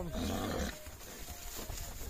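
A horse makes a short, low, rough vocal sound lasting under a second at the start.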